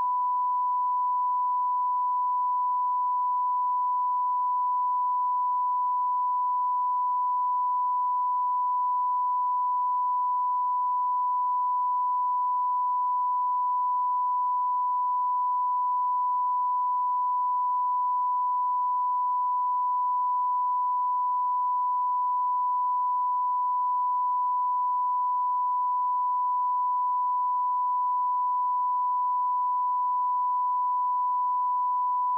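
Steady 1 kHz line-up tone recorded on videotape alongside colour bars, a single unbroken pitch held at constant level. It is the audio reference used to set recording and playback levels.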